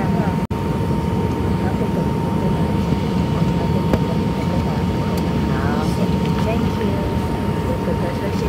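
Airbus A319 cabin noise on the ground: a steady rumble with a thin steady whine from the idling engines and cabin air, with faint voices of other passengers. The sound drops out for an instant about half a second in.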